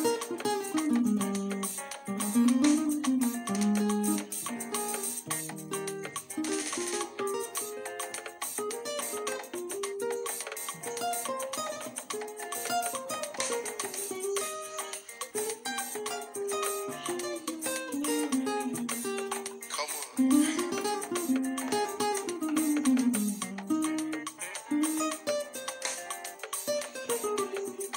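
Acoustic guitar playing a fast single-note highlife lead line, with runs of plucked notes climbing and falling along the neck.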